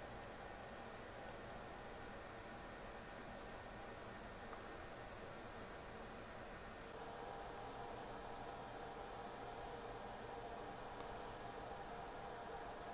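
Faint steady hiss and hum of room tone, with three faint clicks in the first few seconds; the hum grows slightly louder about seven seconds in.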